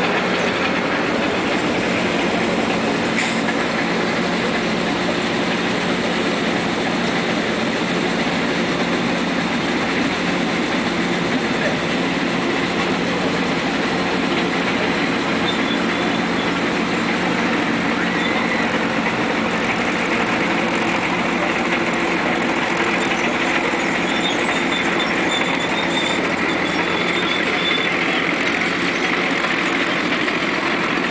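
Marion Model 21 electric shovel's motor-generator set running: a steady electric hum over continuous mechanical running noise, unchanged throughout. A faint high whine comes and goes in the second half.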